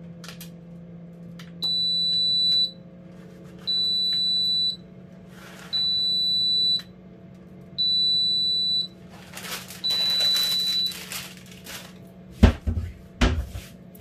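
Oven's ready signal: five long, high electronic beeps about two seconds apart, telling that the oven has finished preheating, over a steady low hum. A rustle follows, then two sharp knocks near the end.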